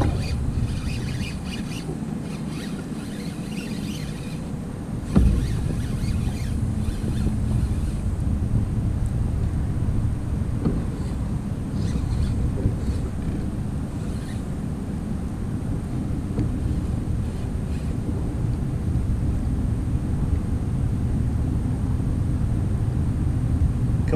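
Wind buffeting the microphone, a steady low rumble, with one sharp knock about five seconds in.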